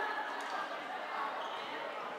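Indistinct shouts and calls of floorball players echoing in a large sports hall, with a sharp knock of play on the court about half a second in.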